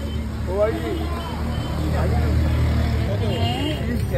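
Street ambience: a motor vehicle's steady low engine rumble passing close by, easing off about three seconds in, with people's voices in the background.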